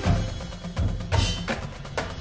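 High school marching band playing live, with sharp drum and percussion hits over the band's sustained notes.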